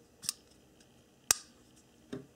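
Spyderco Skyline folding knife being snapped open: a small click about a quarter second in, then a single sharp, loud metallic snap a little past halfway as the blade swings out and the liner lock engages.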